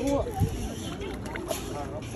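Background voices of people talking in short phrases, over a steady low rumble of wind on the microphone.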